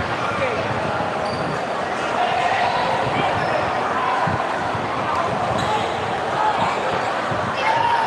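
A basketball bouncing on an indoor court a few times, over steady, indistinct crowd chatter in a large gym.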